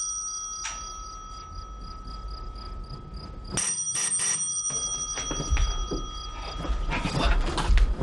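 Crickets chirping in an even pulse over a steady high-pitched whine, with knocking on a door, three quick knocks about three and a half seconds in.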